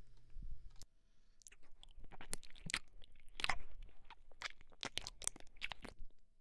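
Wet mouth clicks and smacks from licking and nibbling close against the ear of a 3Dio binaural microphone. They come irregularly, a couple a second, starting about half a second in.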